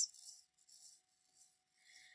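Very faint room tone: a low steady hiss with a faint hum underneath.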